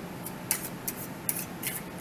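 Tarot cards being shuffled by hand: a handful of short, crisp snaps of card against card, irregularly spaced.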